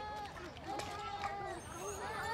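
Children's voices calling out and chattering across a playground: several short, high-pitched calls.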